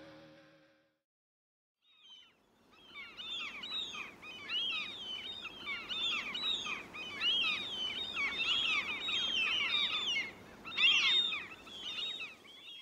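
A fading final note dies away in the first second; after a second of silence, a dense chorus of high, chirping, whistling animal-like calls begins, with many quick overlapping rising and falling glides, running as a nature-sound intro into the song.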